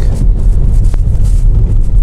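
Steady low rumble of a moving car's road and engine noise inside the cabin, with a faint click about a second in.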